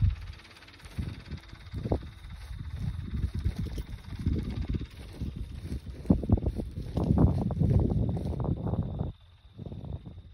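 Wind buffeting the phone's microphone in uneven gusts, mixed with handling rumble as the phone is carried; the gusts grow stronger in the second half and drop away briefly near the end.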